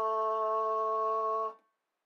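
A held note on A, the solfège syllable 'la', sung in a steady voice over a piano playing the same note an octave lower. It cuts off about one and a half seconds in, leaving silence.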